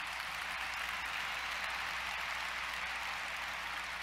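A large audience applauding steadily, heard as an even wash of clapping.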